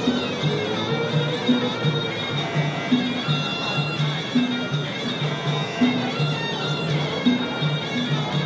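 Traditional Muay Thai fight music (sarama) playing during the bout: a shrill, wavering pi oboe melody over a steady beat of klong khaek drums and regular ticks of the ching cymbals.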